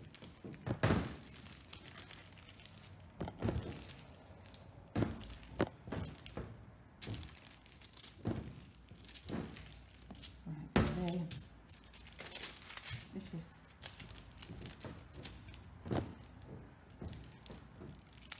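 A rolling pin rolled back and forth over greaseproof paper on a stainless steel worktop, flattening butter. Irregular knocks as the pin is pressed and set down, with paper crinkling.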